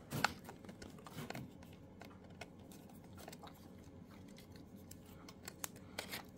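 Faint, scattered clicks and scrapes of a screwdriver on the screws of a telephone dial's terminal block and of wires being handled, the sharpest click just after the start.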